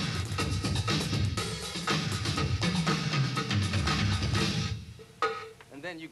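Drum kit of electronic drum pads, cymbals and kick drum playing a busy groove with fills, laid a little behind the click for a natural feel; the playing stops about four and a half seconds in, followed by one more hit.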